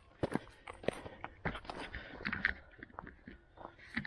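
Footsteps on a dirt and stone path: short, irregular steps, a few a second.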